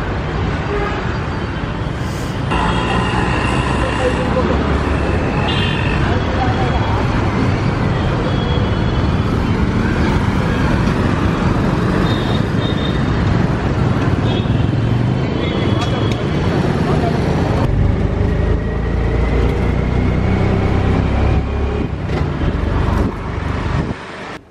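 Busy street traffic: motorbikes, scooters and auto-rickshaws running past, with several short horn toots and voices of people around. About three-quarters of the way in, the sound changes to a heavier low rumble from riding inside an auto-rickshaw.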